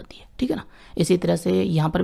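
Only speech: a person talking, with a short pause at the start.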